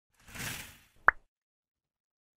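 Logo-intro sound effect: a soft whoosh swells and fades, then about a second in comes a single sharp pop that quickly rises in pitch.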